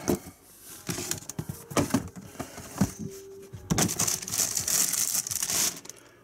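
A cardboard shoebox being slid out, knocked about and opened, with the tissue paper inside rustling and crinkling in uneven bursts.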